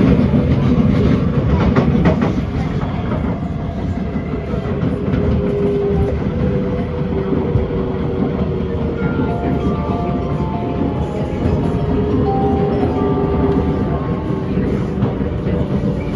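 SMRT C751B electric train heard from inside the car while running on elevated track: a steady low rumble of wheels on rail, loudest in the first two seconds. In the second half, a series of short steady tones at changing pitches sounds over the rumble.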